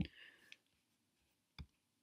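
Computer mouse buttons clicking a few times, the first click the loudest and another about a second and a half in.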